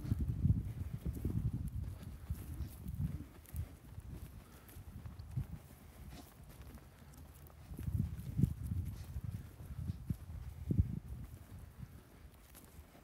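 Footsteps on dry, loose freshly sown topsoil: irregular low thuds, in clusters near the start and again from about eight to eleven seconds, quieter in between.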